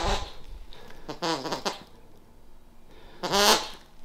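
A dog vocalizing in three short sounds, one to two seconds apart.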